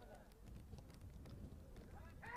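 Near silence: faint ambient sound from the pitch, with faint distant shouting from players.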